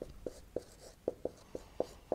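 Marker pen writing on a whiteboard: a quick, irregular series of short squeaky strokes and taps as the characters are drawn.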